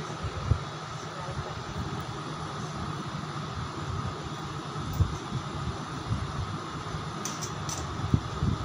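Steady low background hum with a couple of soft knocks, about half a second in and again about five seconds in.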